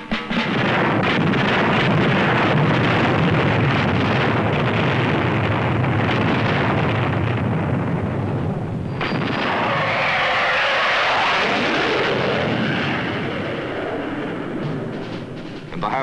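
Film soundtrack of a bombardment: loud, continuous shell explosions and gunfire. The densest barrage comes in the first half. About nine seconds in it gives way to a smoother rushing roar that fades toward the end.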